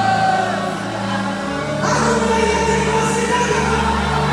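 Live gospel music played and sung in a large hall, with several voices singing over sustained instrument notes; the sound thins briefly about a second in, then swells fuller about two seconds in.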